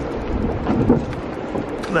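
Wind rumbling on the microphone over the rush of river water alongside a drift boat.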